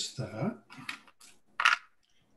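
A man's voice makes a brief wordless vocal sound at the start, followed by light handling noises and a short sharp hiss near the end.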